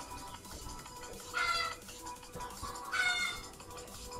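Two short pitched animal calls about a second and a half apart, over faint steady background music.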